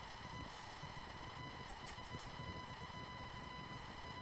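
Quiet room tone with a faint, steady high-pitched electrical whine running under it.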